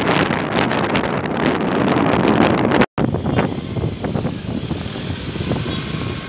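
Road and traffic noise from a moving vehicle, with wind buffeting the microphone. About three seconds in the sound cuts out for an instant, then comes back quieter: lighter traffic noise with a few faint clicks.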